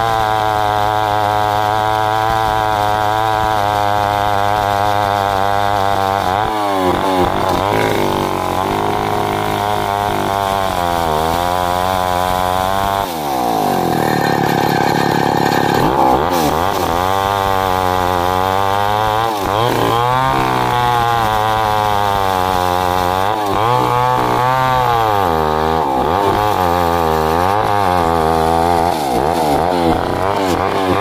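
Two-stroke chainsaw running under load as its bar rips lengthwise through a jackfruit log. The engine pitch keeps wavering up and down as the chain bites and frees in the cut, with a deeper dip and recovery about 13 seconds in.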